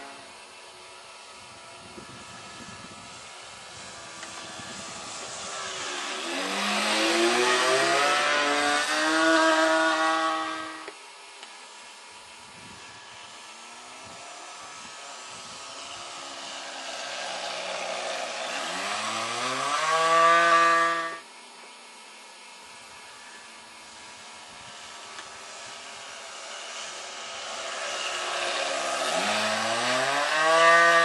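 The 15 cc OS glow engine of a 2 m Gerle-13 model biplane running at speed on low passes: a buzzing drone that grows louder and rises in pitch over several seconds, then cuts off sharply, twice, with a third pass building near the end.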